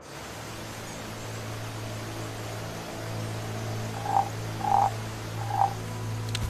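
Steady rush of a waterfall, with a frog croaking three times in short calls over the last two seconds.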